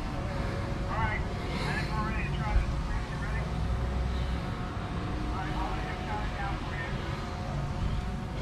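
Indistinct voices talking over a steady low rumble, with a single sharp knock about two and a half seconds in.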